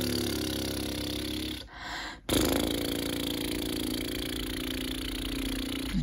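Lip buzzing for a French horn buzz-down warm-down: two long, low buzzed tones, each sliding slowly down in pitch. The first ends about a second and a half in, and the next starts just after two seconds.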